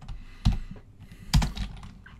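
Computer keyboard being typed on: a few separate keystrokes, the two loudest about a second apart.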